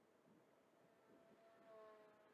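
Near silence, with the faint steady whine of a small radio-controlled model biplane's motor and propeller, growing louder for a moment near the end as the plane passes overhead.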